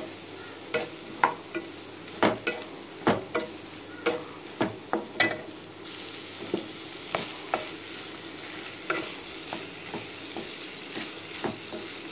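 Cauliflower florets being stir-fried in a nonstick pan: a steady sizzle, with sharp scrapes and knocks of the stirring utensil against the pan. The knocks come often in the first half and more sparsely later.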